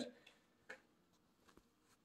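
Near silence: room tone, with one faint click less than a second in and a couple of fainter ticks later.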